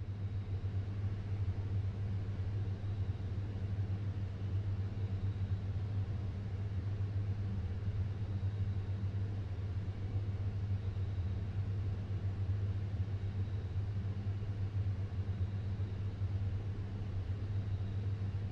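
A car engine idling: a steady, even low rumble.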